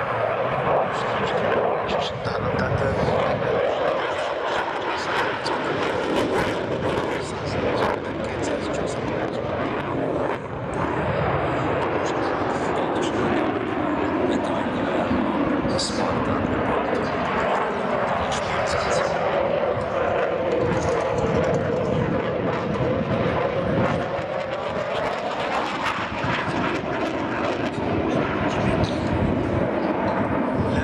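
Dassault Rafale fighter's twin turbofan jet engines, a loud, steady jet roar as the aircraft manoeuvres overhead. In the second half the pitch slowly sweeps down and then back up as it passes.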